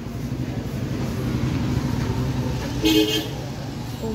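Steady low traffic rumble, with one short vehicle horn toot about three seconds in.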